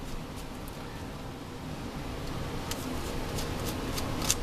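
Low steady background hum with a few faint clicks in the second half from hands handling an Andis Master clipper and its blade. The clipper is not yet running.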